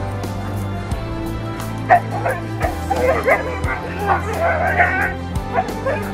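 A husky whining and yipping in excited greeting, a run of short high cries that bend up and down, starting about two seconds in and stopping shortly before the end, over background music.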